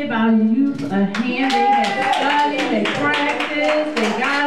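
Congregation clapping hands in a steady rhythm, about three to four claps a second, under voices singing with long held notes.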